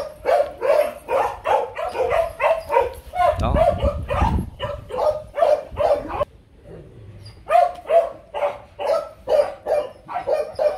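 A dog barking in quick, high-pitched yaps, two or three a second, with a pause of about a second just past the middle. A low rumble comes through in the middle.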